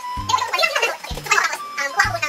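Background music with a steady beat, a low thump about once a second.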